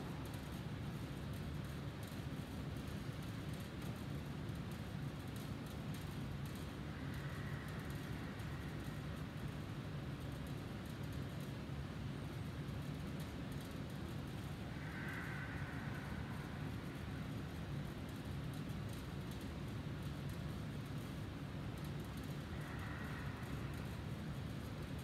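Steady low hum and hiss of room tone, even in level throughout, with a few faint high tones that come and go.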